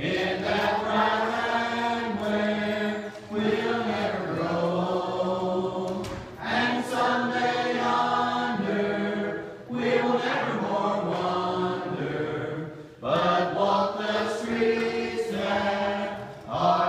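Church congregation singing a hymn together, in sung phrases of about three seconds each with short breaks between them.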